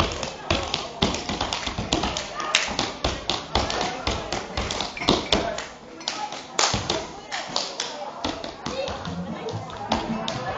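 Rapid, irregular taps and slaps of a Roma men's solo dance: shoes striking a wooden floor and hands slapping the body in quick, uneven runs.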